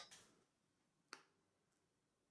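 Near silence with a single faint, short click a little over a second in.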